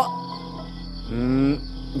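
Crickets chirring steadily over a sustained background music score, with one short spoken 'ừ' about a second in.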